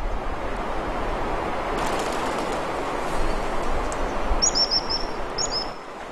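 Fast mountain stream rushing over stones, a steady rush of water. Near the end a small bird chirps two short runs of quick high notes.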